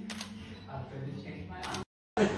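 Camera shutter clicking, once right at the start and again near the end, with quiet talking underneath.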